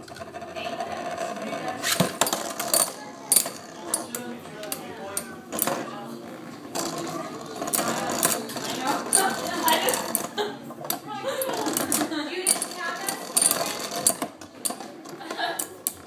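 Two metal-wheel Beyblade tops, Flame Byxis and Basalt Horogium, spinning in a plastic stadium, their metal wheels knocking and scraping together in a run of sharp, irregular clicks over a steady whir.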